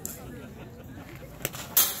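A baseball pitch smacking into the catcher's leather mitt: a sharp pop about one and a half seconds in, then a louder short crack just after. Faint voices murmur underneath.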